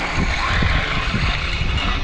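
Radio-controlled 1970 Dodge Charger R/T on hard drift tyres driving across concrete: motor whine rising and falling, with tyre noise and a heavy, uneven low rumble.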